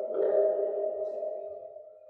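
A single ringing musical tone that starts suddenly and fades away over about two seconds.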